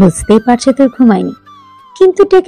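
Narrating voice over soft background music; in the last half-second the voice stops and only the music plays.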